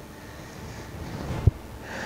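A man breathing between sentences: a soft breath, then a short low thump about one and a half seconds in, then an intake of breath near the end.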